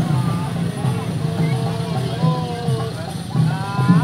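Voices over the parade's percussion music, with a rising pitched call near the end.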